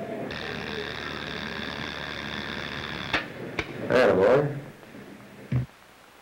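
Dental X-ray machine buzzing steadily for about three seconds during an exposure, then cutting off with a click.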